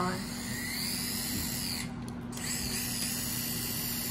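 Team Associated SC28 RC truck's small electric motor and drivetrain whining as the throttle is applied with the truck held off the ground, wheels spinning free. The pitch rises and falls with the throttle; the motor cuts out briefly about halfway, then spins up again.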